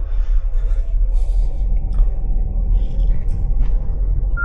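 Steady low rumble of a 2023 VW Polo Highline driving, engine and road noise as heard inside the cabin.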